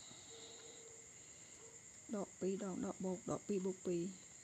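A man's voice speaking a few short syllables in the second half, over a steady faint high-pitched whine in the background.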